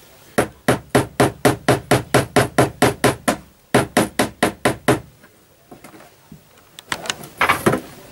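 Small hammer tapping tiny steel track pins through model railway track into a cork-covered baseboard: quick, light strikes about four a second in two runs with a brief pause, stopping about five seconds in. A few louder knocks come near the end.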